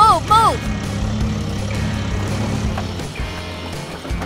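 A few short, falling squeaky cartoon-voice cries right at the start, then a steady low motor drone from the toy excavator as it drives, over background music.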